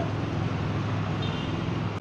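Steady low rumble of road traffic with an engine hum underneath, outdoors in the street.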